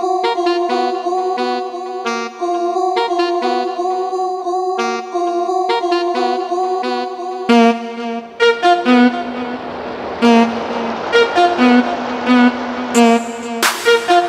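Instrumental karaoke backing track with the vocal melody removed. A riff of short repeated pitched notes plays alone at first, then a fuller beat with drums and bass comes in about halfway through.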